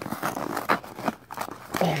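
Cardboard lid of a tightly packed bank box of penny rolls tearing and crinkling in quick irregular rips as hands pull it open; the packing is so compressed that the lid rips instead of lifting.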